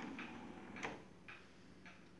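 Marantz CD-65 II CD player's disc tray motoring open: faint mechanism noise with a few light clicks, the sharpest just under a second in.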